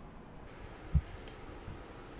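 Faint clicks from computer controls and one soft, low thump about a second in, over quiet room tone.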